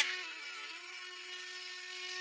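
Quiet background music: a soft held chord sustained under a pause in the dialogue, rising slightly in level toward the end.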